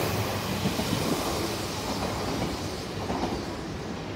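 An Odakyu 8000 series electric train running out of the platform past the listener, its running noise slowly fading as it pulls away.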